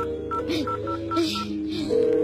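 Telephone keypad beeps: about seven short, same-pitched beeps in quick succession as a number is dialled, over background music. Just at the end a steady telephone tone begins.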